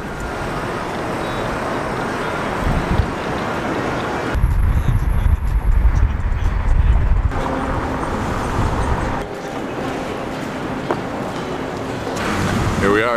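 City street traffic noise: cars running along a busy road, a steady wash of engine and tyre sound. A heavier deep rumble takes over for about three seconds in the middle.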